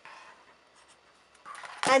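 Sharp fabric scissors cutting through a layered quilted square of cotton fabric and batting. A soft rasping snip comes near the start, followed by faint rustles and ticks of the fabric being handled.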